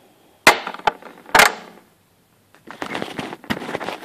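Two sharp metallic clicks with a short ring, about a second apart, from a brass padlock and metal lock picks being handled. Near the end comes a run of lighter clattering and rustling handling noise.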